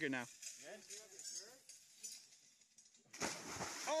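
A person plunging into a pool of water: a big splash hits suddenly about three seconds in and keeps on as the water churns.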